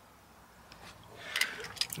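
Near silence, then from about a second and a half in a few light clicks and rustling: handling noise as someone settles into a truck's driver's seat.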